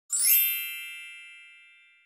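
A single bright chime, struck once and ringing out with many high shimmering tones that fade steadily over about two seconds: a sound effect for an intro logo reveal.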